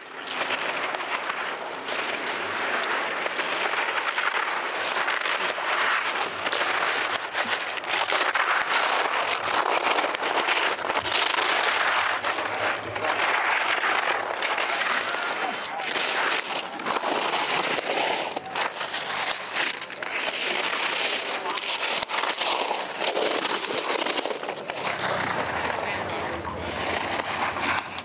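Giant slalom skis carving turns on hard, icy snow: the edges make a continuous scraping hiss that swells and fades with each turn, broken by many short crackles as they chatter over the ice.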